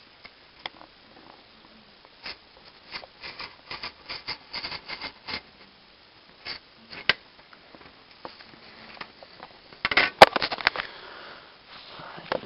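Hobby knife scoring and scraping corrugated cardboard in short, irregular scratchy strokes, with a burst of louder knocks and rustling about ten seconds in.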